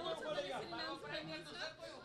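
Background chatter: several people talking at once at moderate level, with no single voice standing out.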